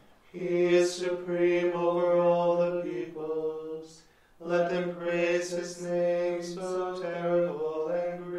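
Liturgical chanting of a psalm: voices hold a nearly steady reciting note in two long phrases, with a short break for breath about four seconds in.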